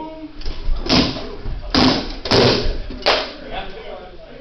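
Four heavy blows, spread about half a second to a second apart, with the longest near the middle. They are typical of rattan weapons striking shields and armour in SCA heavy-combat sparring.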